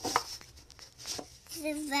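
Hands handling a plastic bag of potting soil and plastic pots: a few short rustles and taps in the first second or so, then a spoken word near the end.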